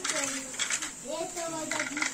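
A few light clicks of hard plastic toy pieces being handled and set down in a wheelbarrow, with faint voices.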